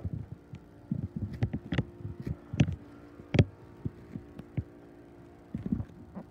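Soft, irregular thumps of footsteps on carpet and of a handheld phone being jostled, with a few sharper clicks, over a steady faint hum.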